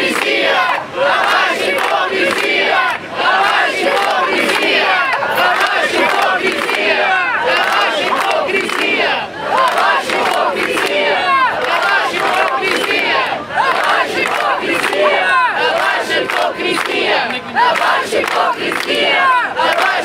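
A large crowd of demonstrators chanting a slogan together in Portuguese. It is loud and continuous, with many voices overlapping and short dips between the repeated phrases.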